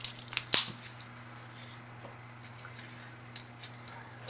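A few sharp handling clicks from a marker pen and playing cards, the loudest about half a second in, then a steady low hum with one small tick near the end.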